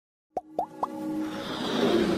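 Three quick rising pops about a quarter second apart, then a swelling build of music and hiss, the sound design of an animated logo intro.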